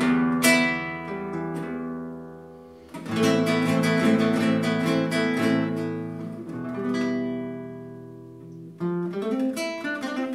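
Nylon-string classical guitar played solo: a chord struck and left to ring out and fade, a burst of strummed chords about three seconds in, another ringing chord about seven seconds in, then quicker single picked notes near the end.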